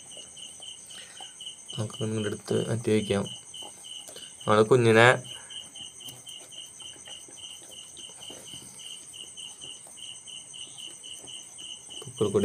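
Insect chirping in an even, repeating high-pitched pulse throughout, with a man's voice briefly twice.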